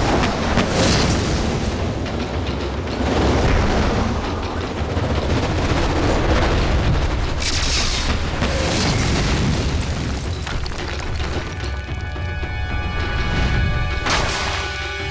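Sound-effect explosion booms and rumbling from a cartoon fight, swelling several times, over dramatic score music. The music's held notes come through more plainly near the end.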